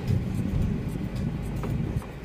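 Steady low engine and road noise inside a moving Peugeot car's cabin, with music playing in the background.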